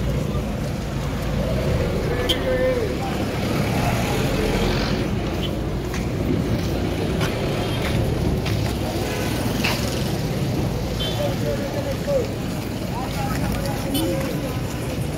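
Busy street ambience: a steady low rumble of vehicle engines, with the chatter of passers-by and a few sharp clicks and knocks.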